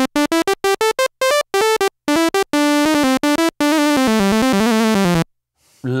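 Korg Monologue analogue monophonic synthesizer playing a bright, brash sawtooth patch from its initial program. It plays a quick run of short staccato notes, then a joined-up line of held notes stepping up and down in pitch, which stops about five seconds in.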